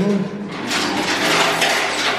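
Heavy steel dynamometer roller frame scraping against its concrete floor pit as it is shifted into line. A rough scraping noise starts about half a second in and continues for about a second and a half.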